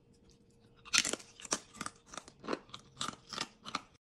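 A twice-fried homemade potato chip being bitten and chewed: a quick, irregular run of sharp crunches starting about a second in. The crunch shows how crisp the chip is.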